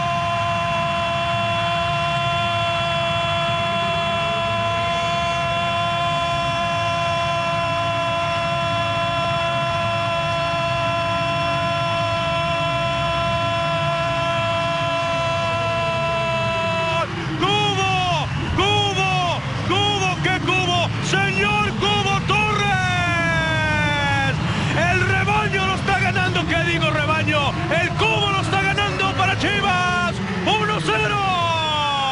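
Spanish-language TV football commentator's goal call: one long drawn-out shout held on a single pitch for about seventeen seconds. It then breaks into rapid excited shouting, each cry falling in pitch.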